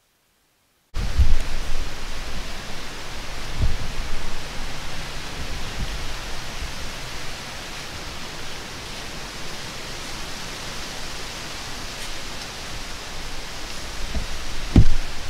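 Wind noise outdoors, a steady rushing hiss with a few low thumps of gusts hitting the microphone, starting abruptly about a second in after a moment of silence.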